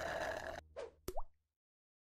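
A closing music chord cuts off about half a second in, followed by two short cartoon plop sound effects, the second with a quick rising pitch.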